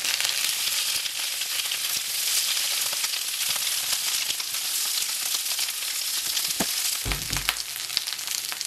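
Asparagus sizzling and popping in hot olive oil in a large skillet as the spears are turned with a silicone spatula. The popping comes from rinse water left on the spears meeting the hot oil. A click and a short low thump sound near the end.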